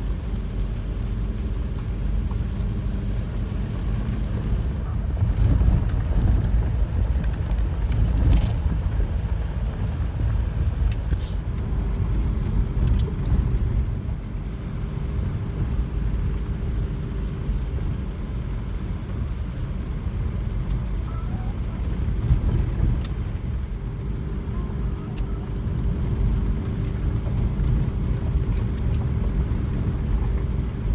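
2006 VW Beetle turbodiesel driving along a gravel desert road: steady engine and tyre rumble, with a couple of sharp ticks partway through.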